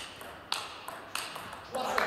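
Table tennis rally: the celluloid-type ball clicking off paddles and the table, sharp strikes about every half second.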